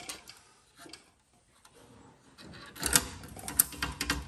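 License plate being fitted back onto its removable holder bracket: a single click at first, then a quick cluster of sharp clicks and knocks about three seconds in, as the plate seats.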